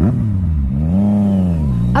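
Yamaha FZ-09's three-cylinder engine revving under throttle while riding: the engine note climbs to a peak about a second in, then drops back down.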